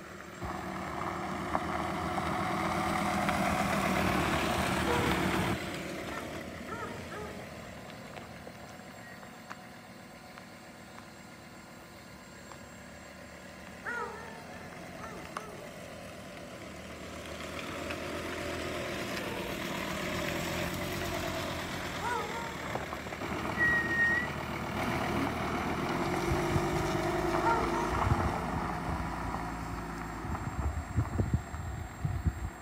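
Volkswagen Transporter T5 pickup's 2.5 TDI five-cylinder turbodiesel driving slowly, with its tyres on gravel. It is loudest over the first few seconds, lower through the middle, and louder again in the second half.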